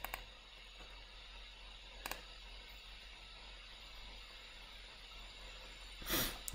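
Faint room tone with a few computer mouse clicks: a quick double click at the start and another click about two seconds in.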